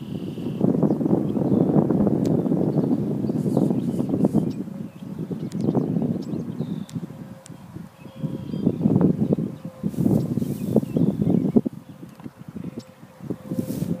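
Wind buffeting the microphone in uneven gusts, dropping away briefly several times.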